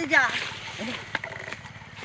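Tall mustard plants rustling and swishing as people push through them, with a few faint clicks.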